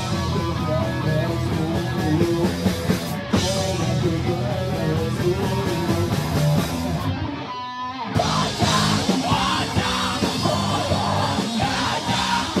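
Live rock band playing loud in a small room, with distorted guitar, bass and drum kit and a singer yelling into a microphone. About seven seconds in, the band cuts out for under a second, leaving a single ringing note, then comes back in.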